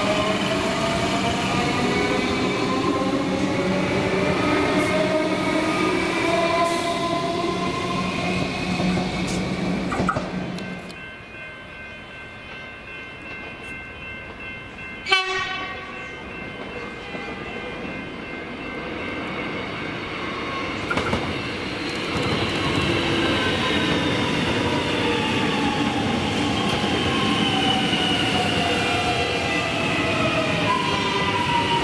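Siemens electric multiple unit pulling away with the rising whine of its traction motors and wheel noise on the rails. After a quieter stretch with one sharp knock about halfway through, an X'trapolis electric train runs in, its motor whine falling in pitch as it brakes into the platform.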